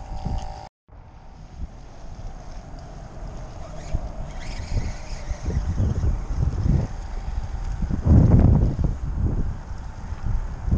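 Wind gusting across a camera microphone, a low rumbling buffet that swells and eases, loudest about eight seconds in. The sound cuts out for a moment near the start.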